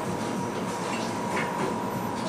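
Glass passenger lift running: a steady mechanical rumble and hum with a constant thin whine.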